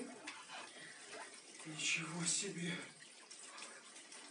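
A man speaking quietly for about a second near the middle, over a steady hiss.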